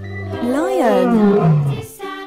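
A lion roaring: one long call that rises briefly and then falls in pitch over about a second and a half, starting as the background music cuts off.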